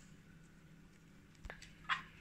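Faint crinkling of a plastic sachet being squeezed and handled, with a light tap about one and a half seconds in and a louder crinkle near the end.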